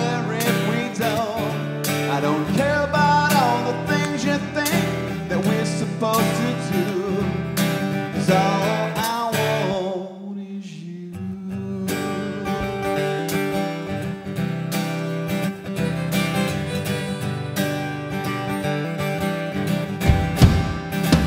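Live folk-rock song: strummed acoustic guitar with a man singing over it, easing off briefly about halfway through.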